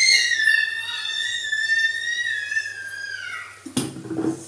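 A high whistle rising in pitch as it starts, held steady for about three seconds, then falling away. A short knock sounds near the end.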